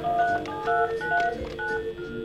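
Push-button desk telephone dialling a number: a quick run of short touch-tone (DTMF) beeps as the keys are pressed, each a different two-note pitch.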